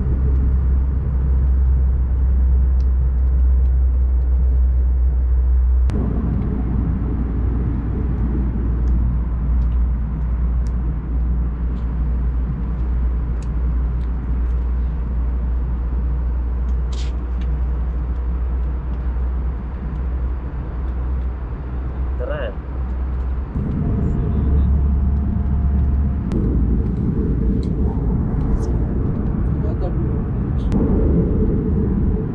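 Airliner cabin noise: a loud, steady low rumble of engines and airflow heard from inside the passenger cabin. It drops a little about six seconds in and comes back up near the end.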